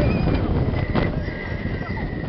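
Roller coaster train running along its track, heard from a seat on board: continuous rumble and rattle with wind on the microphone. About a second in, a rider's high-pitched scream comes in and is held to the end.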